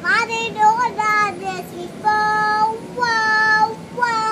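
A young girl singing in a high voice: a quick rising start, a few short notes, then two long held notes in the second half.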